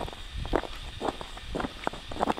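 A hiker's boots crunching in snow while walking, about two steps a second.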